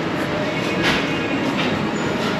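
Footsteps on a hard tiled floor, a few soft steps spaced well under a second apart, over a steady rushing background noise.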